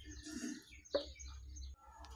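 Faint bird chirps in the background, with a brief sharp click about a second in.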